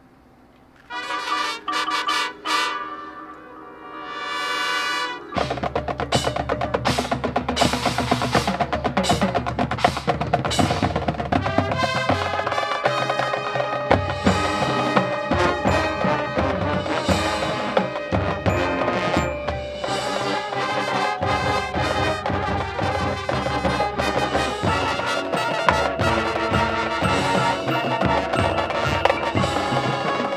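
Marching band opening its show: after about a second of quiet, held brass chords come in, then a rising swell, and from about five seconds in the full band plays with brass over busy drum and mallet percussion.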